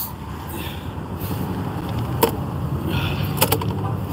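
Steady low rumble of road traffic, with a few light clicks near the middle and later on.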